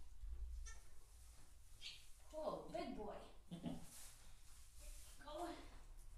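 Goat bleating softly: a few low, wavering calls starting about two and a half seconds in, and another near the end.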